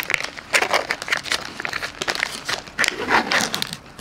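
Thin plastic film lid being peeled off a mochi ice cream tray and its plastic wrapping handled: a run of irregular crinkling crackles.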